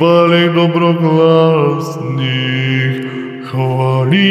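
A man singing a slow Orthodox church chant without accompaniment, holding long notes on a vowel. The melody steps down to a lower note about halfway through, then dips briefly before a new note starts near the end.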